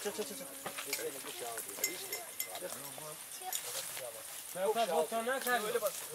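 Several people talking in the background, with one voice louder over the last second and a half, and a few light clicks of a metal fork against the grill grate.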